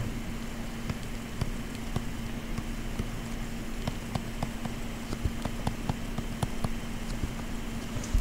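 Light irregular clicks of a stylus tapping on a tablet screen while writing, over a steady low hum and background hiss.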